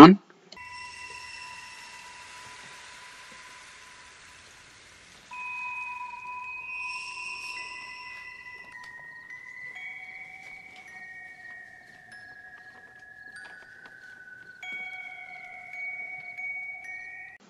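Quiet, eerie film score: sustained high tones held for a second or more at a time, gliding and stepping slowly downward in pitch, with a soft airy hiss under the first few seconds and a slightly louder new pair of tones near the end.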